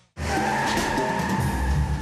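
Cartoon tyre-screech sound effect: a steady squeal held for about a second and a half, starting just after a brief silence, over background music.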